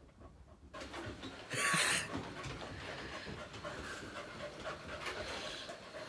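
Dog panting, with a short, loud rushing noise about a second and a half in.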